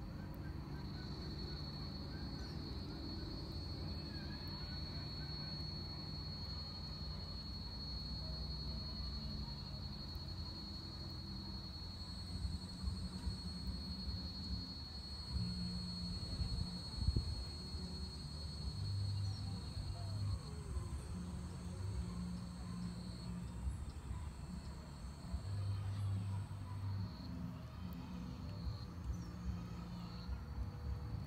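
Insects calling with a steady, high-pitched trill that breaks up in the last third, with a second, higher buzz joining partway through; a low rumble runs underneath.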